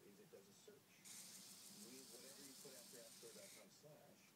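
Faint, fast, dense rattle of a flip-dot display's discs flipping. It starts about a second in and cuts off suddenly near the end. The display is being driven at the edge of its reliable speed, where some dots fail to turn and stay stuck.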